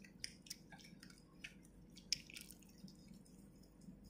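Faint, scattered drips and soft wet clicks of water and face-wash lather as wet hands work over the face.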